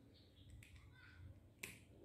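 Near silence with two faint, sharp clicks, a weak one about half a second in and a louder one near the end.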